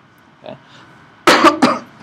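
A man coughing: two loud, sudden hacks in quick succession, close to the microphone.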